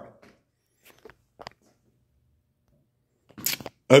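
Mostly quiet, with a few faint clicks about a second in. Near the end comes a short cluster of sharp clicks and rattles from handling in the shop.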